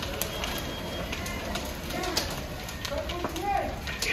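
Fully involved apartment fire burning: a steady rushing noise with scattered sharp crackles and pops from the burning structure. Faint distant voices are mixed in.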